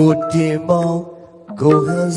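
A man singing into a microphone in a chant-like style over musical accompaniment, in two phrases with a short break a little past halfway.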